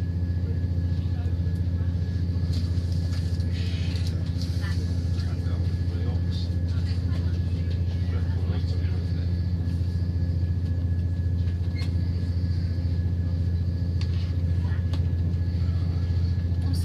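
Steady low drone of a Southern Class 171 Turbostar diesel multiple unit under way, its underfloor diesel engines and running gear heard from inside the carriage, with a few faint ticks.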